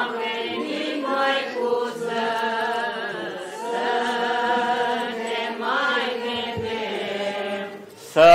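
Orthodox liturgical chant: voices singing slowly in long held notes that step up and down in pitch.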